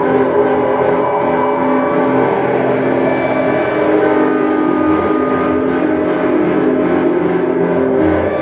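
Lap steel guitar and electric guitar playing a dense, sustained drone of many held, ringing tones, with no beat or break.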